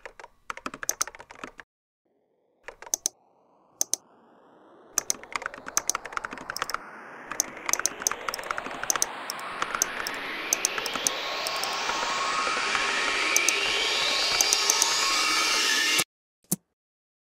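Typing on a low-profile Apple computer keyboard, quick key clicks in short runs. From about three seconds in, a swell of noise rises steadily higher and louder under the clicks, then cuts off suddenly at the end.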